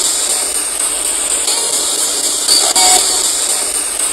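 Spirit box (radio-sweep ghost box) hissing loud static as it scans. The same stretch of static comes round again about every three seconds, as a replayed loop.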